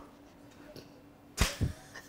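Quiet room tone, then a sharp smack about one and a half seconds in, followed by a softer one just after.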